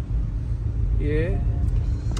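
Porsche 718 Boxster on the move, its engine and tyres making a steady low rumble heard from inside the car.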